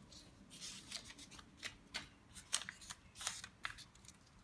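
Red paper cut-outs being handled and shuffled on a glass tabletop: a series of short, crisp paper rustles and crackles.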